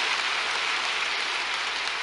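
A large congregation applauding: dense, steady clapping from thousands of hands, easing off slightly near the end.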